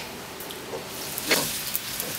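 Food frying in a pan on the stove, a faint steady sizzle, with a single light knock about a second and a half in.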